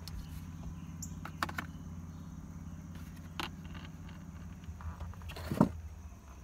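A few light clicks as small metal parts, a loose screw and a chrome cigarette-lighter element, are handled, the sharpest near the end. A steady low hum runs underneath.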